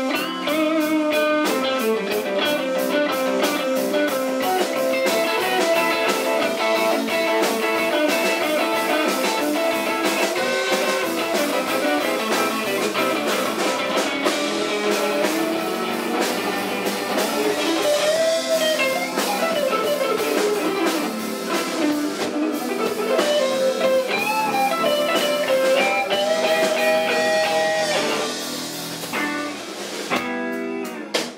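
Live blues band playing an instrumental break, with electric guitar lines carrying notes that bend up and down in pitch.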